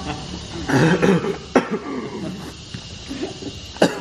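A man coughing in fits amid laughter, with a sharp cough about a second and a half in and another near the end.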